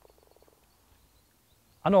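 Putter striking a golf ball on a short putt: one faint sharp click, followed by a brief fast rattle lasting about half a second. A man starts speaking near the end.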